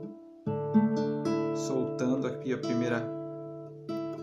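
Acoustic guitar playing a D add9 chord note by note: the strings are damped, then about half a second in they are plucked one after another from the fourth string down and left ringing together.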